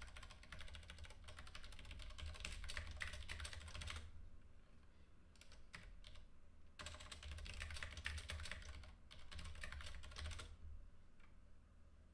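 Typing on a computer keyboard: a run of rapid keystrokes, a pause of about three seconds broken by a few single key presses, then another fast run that stops about two thirds of the way through.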